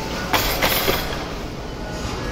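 A barbell loaded with 130 kg of bumper plates being racked onto a bench press's steel uprights: a quick run of metallic clanks and plate rattle, about three knocks within half a second.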